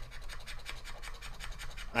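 Scratch-off lottery ticket having its coating scratched away, in rapid, even scraping strokes.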